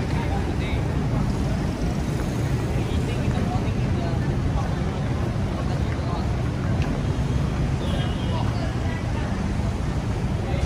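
Busy city street ambience: a steady low rumble of traffic with the voices of people around.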